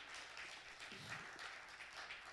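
Congregation applauding, faint and steady, as many hands clapping at once, with a short low voice about a second in.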